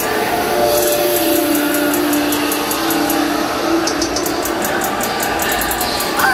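Concert music over the arena PA, recorded from the crowd: held synth notes over crowd noise, with fast, evenly spaced ticks coming in about four seconds in, the start of a song's intro.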